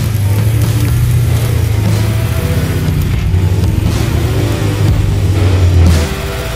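Supercharged Hellcat V8 in a 1968 Dodge Power Wagon running as the truck drives, louder just before the end, heard with music.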